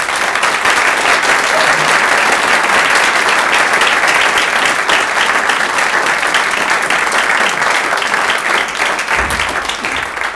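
Audience applauding steadily in a lecture hall, a dense sustained clapping that eases off slightly near the end.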